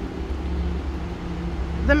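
Steady low background rumble with a faint, even hum above it.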